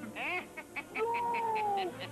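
Cartoon pet-creature vocal effect, animal-like: a quick rising-and-falling yelp, a rapid run of short yips, then one long whine that slowly falls in pitch.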